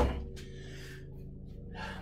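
A dull low thump right at the start as the camera is brushed, then a steady low hum with a few steady tones.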